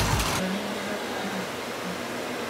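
Background music cutting off about half a second in, leaving a steady, even noise with a faint low hum.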